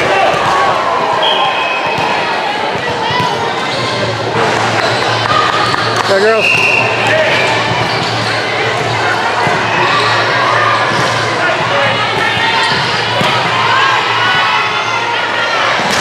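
Volleyball gym sounds: thuds of volleyballs being hit and bouncing on the courts, over a steady hubbub of players' and spectators' voices across the hall. Short high squeaks come through now and then, the clearest about six seconds in.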